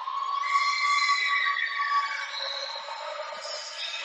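Ring announcer's voice over the arena public address, a long drawn-out call held for a couple of seconds and sliding slightly in pitch, sounding thin with no low end.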